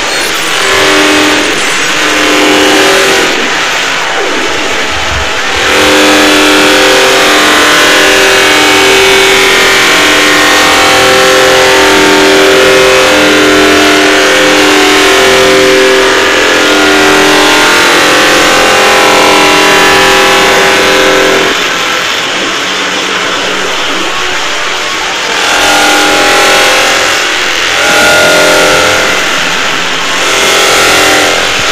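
A loud, distorted wall of sound from many video soundtracks played over one another at once. A melody of held notes runs through it and is strongest from about six seconds in to about twenty seconds in.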